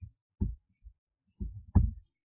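A few short, soft, low thumps close to the microphone, the loudest near the end.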